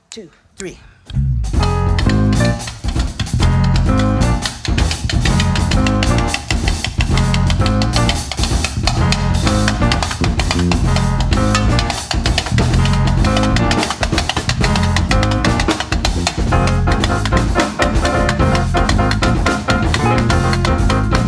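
A spoken count-in, then a jazz quartet comes in together about a second in: grand piano, electric bass, drum kit and congas playing an up-tempo tune.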